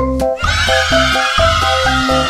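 Bouncy background music of short, evenly spaced pitched notes over a bass line. About half a second in, a high, wavering sound effect is laid over the music and runs on for about two seconds.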